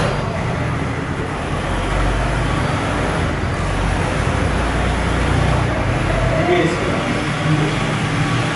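Steady road-traffic noise from the street, a continuous low rumble of passing vehicles, with faint voices in the background.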